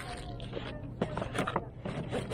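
Cardboard camera packaging being handled: a few light knocks and scrapes about a second in as the box sleeve is worked over a hard carry case, over a steady low background hum.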